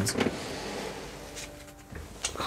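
Soft rustling and handling noise as a person bends down to pick up fallen tarot cards, with a couple of light clicks just at the start.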